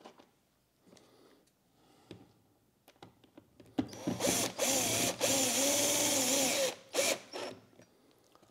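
Cordless drill/driver driving a metal screw through a steel mounting bracket into the back of an absorber panel: a steady motor whine about four seconds in, lasting about three seconds with its pitch wavering slightly under load, then one brief second burst. Before it, only faint clicks of the screw being set in place.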